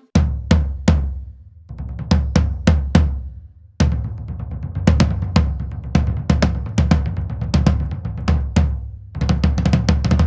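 A floor tom, both heads just tuned to a digital drum tuner's tension readings, struck repeatedly with drumsticks in short groups and fills, each stroke followed by a long, low ring; a faster run of strokes comes near the end. The drummer judges the tuning perfect.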